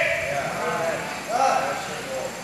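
Speech only: a man preaching, his voice dropping between phrases with a short utterance in the middle.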